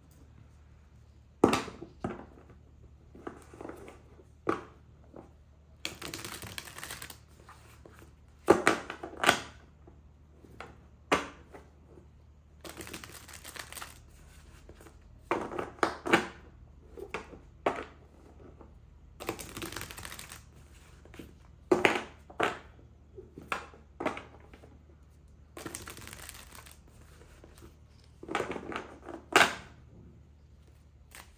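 A deck of tarot cards being shuffled by hand: cards slapping and sliding against each other in short bursts every second or so, with a few longer sliding stretches of a second or more.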